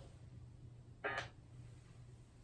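Very quiet room tone with a low steady hum, broken once about a second in by a short, brief noise.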